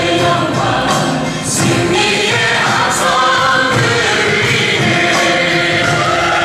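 Christian praise-and-worship song: a group of voices singing over backing music at a steady, loud level.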